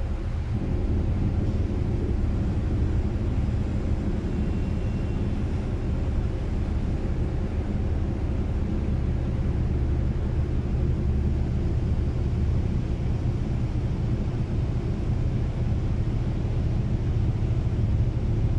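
Deep, steady rumble of a large passenger ferry's engines and propellers as it manoeuvres away from the pier.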